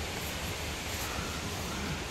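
Steady rush of water from the Pistyll Rhaeadr waterfall, an even hiss that does not let up.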